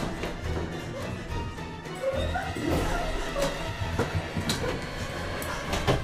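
Tense horror film score under a struggle: several sharp knocks and thumps, the loudest just before the end, with short whimpering cries about two to three seconds in.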